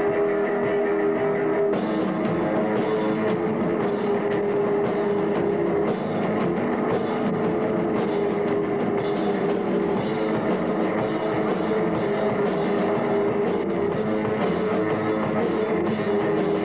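Live rock trio playing an instrumental passage on electric guitar, bass guitar and drum kit, with held guitar chords; cymbals and drums come in hard about two seconds in.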